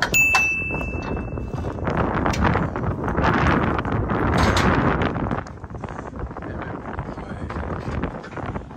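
A sharp metallic clang right at the start that rings for nearly two seconds, from ratchet tie-down strap hardware against the steel car-hauler trailer. It is followed by several seconds of wind buffeting the microphone, loudest in the middle.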